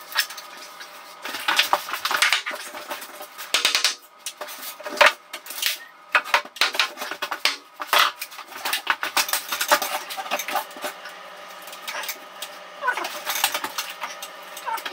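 Irregular metallic clinks and rattles of hand tools being rummaged through and picked up, mixed with wooden knocks of timber studs being handled.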